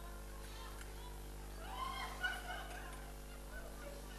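A brief wavering vocal cry from someone in the crowd about halfway through, over a steady low hum.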